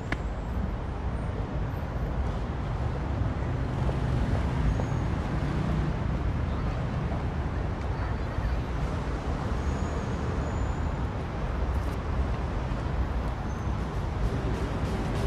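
City street ambience: a steady low rumble of road traffic with a general outdoor hum, a little louder from about four seconds in.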